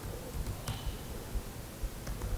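A few faint laptop keystrokes, the clearest about two-thirds of a second in, over a low steady room rumble.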